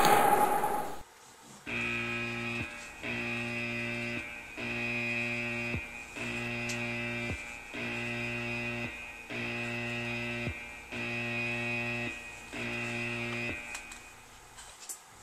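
A buzzing tone sounding eight times in a steady rhythm. Each buzz lasts about a second, with a short gap before the next, starting about two seconds in.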